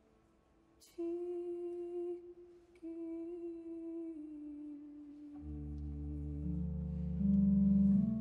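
A soprano sings two soft, long-held notes, the second sliding downward. About five seconds in, low sustained instrumental notes come in underneath and step upward, growing louder toward the end.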